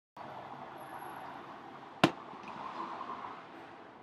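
Steady low room noise with one sharp click about two seconds in.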